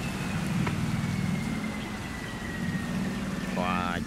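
Cargo barge's engine running steadily at reduced throttle as it passes close by, a low even hum with the wash of its propeller in the water. A faint high whine slowly falls in pitch.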